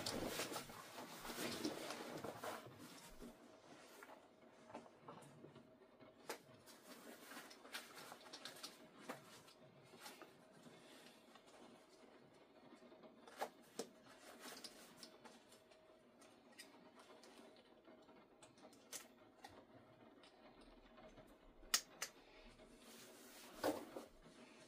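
Nylon bag straps rustling against clothing as a shoulder bag is pulled on, then a few scattered sharp clicks of strap hardware and buckles as the straps are adjusted; otherwise quiet.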